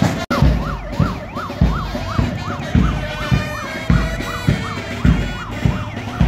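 Vehicle siren yelping, its pitch rising and falling rapidly and over and over, over a marching band's bass drum beating steadily about twice a second. The sound cuts out briefly just after the start, and the siren begins after that gap.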